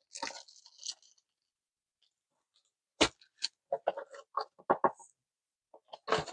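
A cardboard kit box being handled and its plastic-wrapped canvas roll tipped out onto the table: a brief rustle, a sharp knock about three seconds in, then a run of short crinkles and taps.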